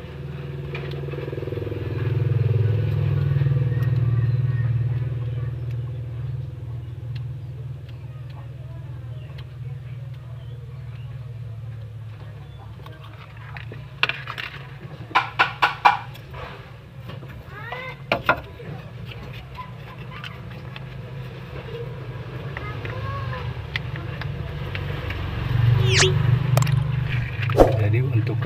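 Low, steady hum of a motor vehicle engine running in the background, swelling near the start and again near the end. About halfway through comes a quick run of short pitched notes.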